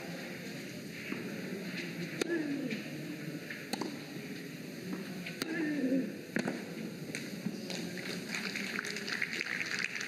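A tennis rally on clay: several sharp racket-on-ball hits about a second and a half apart, with a few short voice sounds among them. Crowd applause swells after the point ends, near the end.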